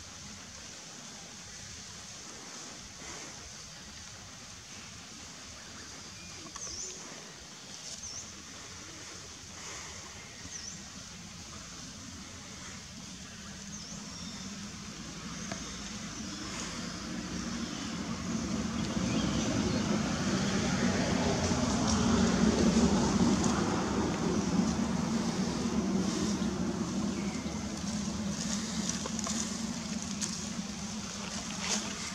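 A motor vehicle passing. Its engine noise builds from about halfway through, is loudest a little after two-thirds of the way, then fades slowly.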